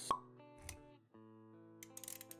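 A short "plop" sound effect just after the start, over soft background music with held notes that shift to a new chord about a second in. A softer low thump comes about halfway through, and a few light clicks near the end.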